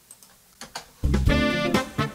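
A few faint clicks, then about a second in an R&B funk backing track starts playing: bass and drums with a horn section of trumpet and saxophones playing chords.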